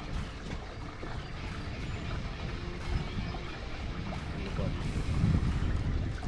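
Wind buffeting the microphone, a steady low rumble, with faint muffled voices briefly near the end.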